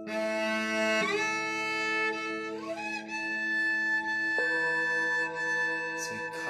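Cello played with the bow: held notes that change about a second in, slide up near three seconds, and change again after four seconds, over a steady lower drone.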